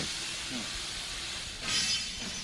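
Steady background hiss of hangar room noise, with a short louder rush of noise near the end.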